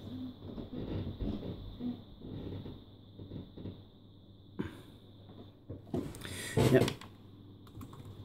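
Laptop keys and touchpad buttons being tapped: light, irregular clicks, with a sharper click a little after halfway, over a faint steady high whine.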